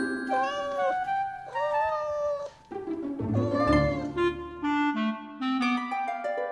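Three drawn-out cat meows, each rising then falling in pitch, over light children's music with bright tinkling notes.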